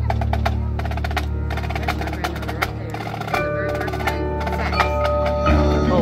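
College marching band opening a Latin number: percussion plays a quick rhythm over a held bass note, horns come in with sustained notes about three seconds in, and the full band enters louder near the end.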